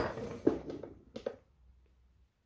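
A few light, sharp clicks from a timegrapher's push-buttons being pressed, the loudest about half a second in and a couple more just after a second, then near silence.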